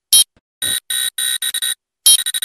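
An electronic buzzer-like sound effect in about six short, uneven bursts, each a harsh mix of a few steady high pitches, with silent gaps between them.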